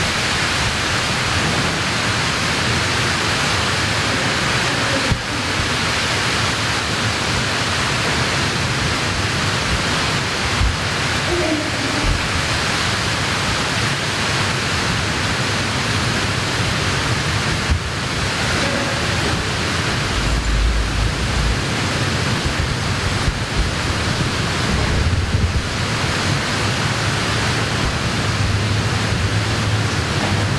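Loud, steady hiss of noise with no clear events in it, and a brief low rumble about two-thirds of the way through.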